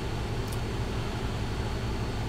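Steady low hum with an even hiss of background noise, and a faint click about half a second in.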